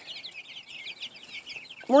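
A flock of young chickens cheeping: many short, high peeps overlapping in a steady chatter.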